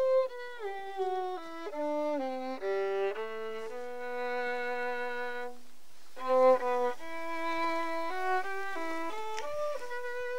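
Solo violin, bowed, playing a slow melody: a stepping phrase that settles onto a long held note, a short pause about halfway, then a second phrase.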